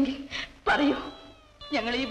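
Film dialogue: a voice finishes a line, a short pitched vocal sound comes about two-thirds of a second in, and after a brief pause speech starts again near the end.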